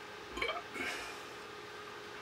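Two brief breath or throat sounds from a man, about half a second apart: a short voiced grunt, then a breathy exhale.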